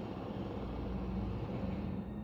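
Steady hiss of background noise over a low hum.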